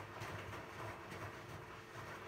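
Zanussi ZWF844B3PW front-loading washing machine in its wash phase: the motor turns the drum, and wet laundry and water tumble and slosh inside, a steady low hum with a soft rise and fall.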